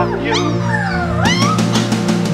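Siberian husky puppy whining: several short high-pitched rising squeals, then a longer cry that dips and rises again, over loud background music.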